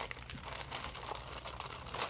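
Plastic zipper storage bag crinkling as hands rummage inside it, a continuous run of small crackles.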